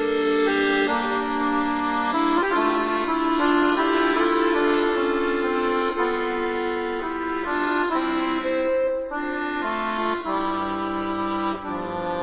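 Accordion playing a slow instrumental introduction: held chords that move to new notes every second or so, with no singing.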